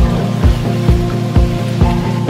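Background music with a steady beat, about two beats a second, over sustained chords.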